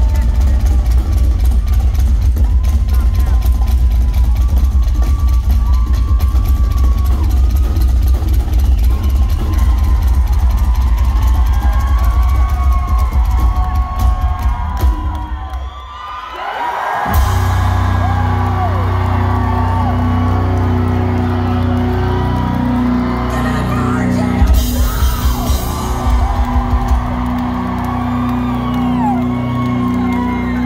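Live rock drum solo on a Pearl drum kit: fast, dense drumming with heavy bass drum and cymbals, with the crowd cheering and whooping. About halfway through the drumming drops out briefly, then a steady low held tone comes in under scattered drum hits and more crowd cheering.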